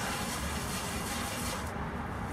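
A gloved hand rubbing the wet bottom of a vinegar-soaked cast iron Dutch oven, making a soft, steady scrubbing hiss as the loosened rust comes off. The rubbing pauses briefly near the end.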